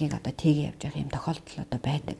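Speech: a woman talking, with no other sound standing out.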